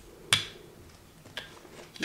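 Rubber brayer worked over a gel printing plate thick with acrylic paint: one sharp click about a third of a second in, then two faint ticks. The brayer is dragging rather than rolling freely, the sign of too much paint on the plate.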